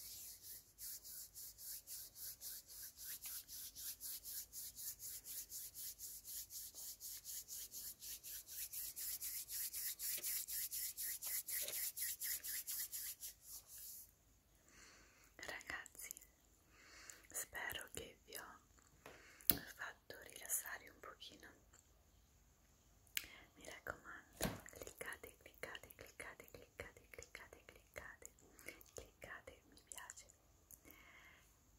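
Palms rubbing together close to the microphone in quick, even strokes, a rhythmic hiss that grows louder and stops abruptly about halfway through. Soft whispering follows.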